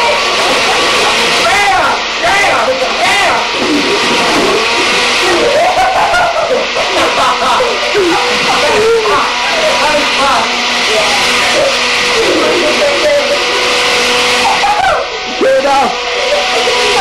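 Countertop blender running loudly on a liquid mix of condiments and juice, a steady whir that dips briefly near the end, with kids yelling and cheering over it.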